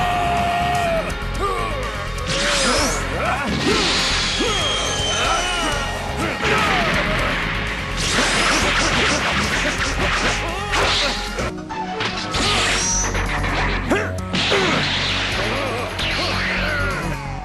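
Cartoon fight sound effects: a dense run of punch and kick impacts mixed with whooshes of fast movement.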